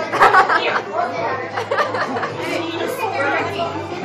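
Indistinct chatter of several people talking over one another, with no clear words.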